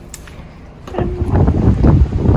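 Wind buffeting the microphone: a loud, low rumble that sets in suddenly about a second in.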